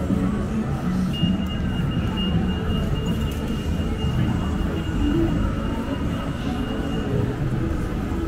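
Busy city street traffic rumbling, with a thin, steady high-pitched squeal that starts about a second in and stops about a second before the end.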